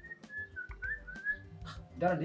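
A person whistling a short run of sliding notes, over quiet background music.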